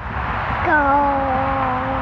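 A young boy's voice drawing out the word "go" as one long, steady-pitched note, over a steady low background rumble.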